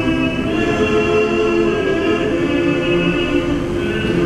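Male choir singing in close harmony, holding sustained chords that change a few times.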